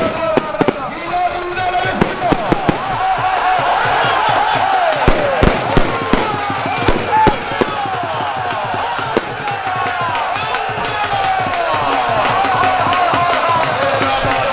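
A large crowd shouting and whistling over and across one another as a pair of racing bulls is driven past, with several sharp, irregular cracks mostly in the middle.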